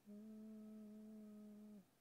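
A man's quiet closed-mouth hum, a held "hmm" lasting under two seconds and dipping slightly in pitch as it ends.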